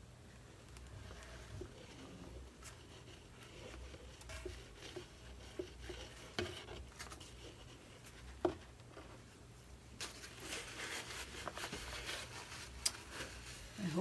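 Quiet room with a low hum, broken by a few faint clicks and rustles from a plastic cup handled in gloved hands while thick acrylic paint is poured. The rustling and clicking get busier over the last few seconds.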